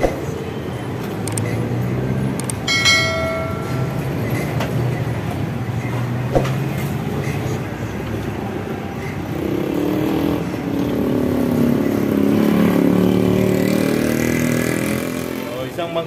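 Street traffic: motor vehicles running past, with one engine louder and wavering in pitch in the second half. A brief ringing chime sounds about three seconds in.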